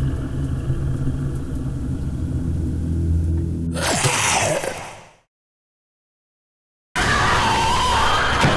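Horror logo sting: a low steady drone under a hiss, ending about four seconds in with a noisy swell that fades away. After nearly two seconds of silence, loud, dark sound design starts again abruptly.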